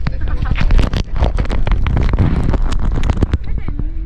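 Indistinct chatter of several people, with wind buffeting the microphone in a constant low rumble and scattered clicks and rustles of handling throughout.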